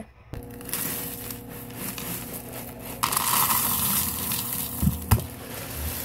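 Dry cereal poured from a plastic container into a plastic bowl: a rattling pour, loudest for about a second midway, with a sharp knock near the end. A steady low hum runs underneath.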